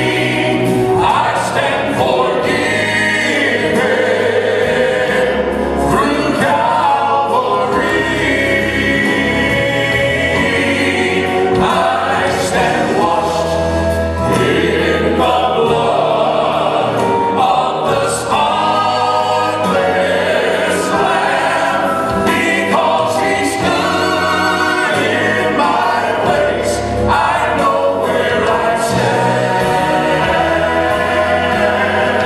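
Southern gospel male quartet singing in harmony.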